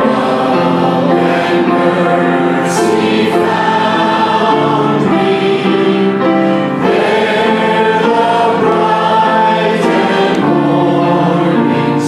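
Worship song sung by several voices into microphones over instrumental accompaniment, with the congregation singing along, in held notes and steady chords.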